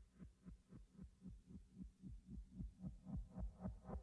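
Faint helicopter rotor blades beating in a steady rhythm of about four beats a second, getting louder.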